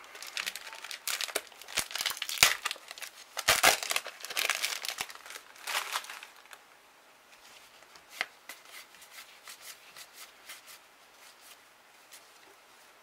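Foil wrapper of a trading card booster pack being torn open and crinkled by hand for about six seconds. After that come soft, sparse clicks of the cards being handled, with one sharper tick about eight seconds in.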